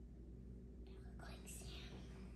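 Faint hiss of granulated sugar pouring from a small glass bowl through a plastic funnel into a flask of water, coming in a few short, soft spurts about a second in.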